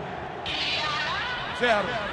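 Radio football broadcast in a short pause between the commentator's phrases. A steady hiss of background noise comes in about half a second in, and the commentator's voice returns near the end.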